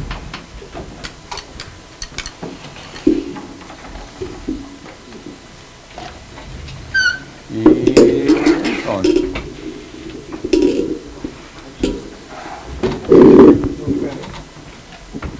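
Indistinct voices in a room, too faint or far from the microphone to make out, with a few sharp clicks and a brief high squeak about seven seconds in.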